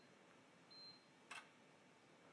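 Near silence, broken by a faint short high beep about a second in and a single soft click shortly after. The beep is one of a series about a second apart from the HT PV-ISOTEST insulation tester while it is measuring with test voltage applied.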